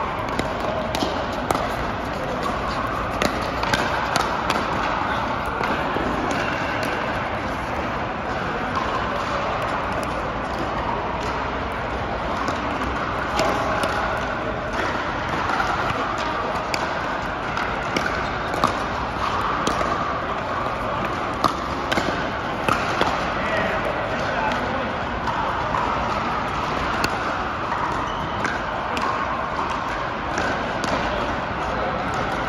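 Pickleball paddles hitting a hard plastic ball, with irregular sharp pops from the rally and from neighbouring courts, over a steady hubbub of many voices in a large indoor hall.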